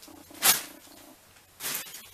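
Fabric or plastic packaging rustling as garments are handled and swapped: a short rustle about half a second in and another near the end. A faint low pulsing hum runs underneath during the first second.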